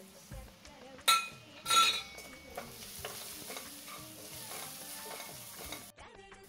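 Onions and spice powders frying in coconut oil in a steel pan, stirred with a utensil: a steady sizzle with scraping, and two loud metallic clatters of the utensil against the pan about a second and nearly two seconds in.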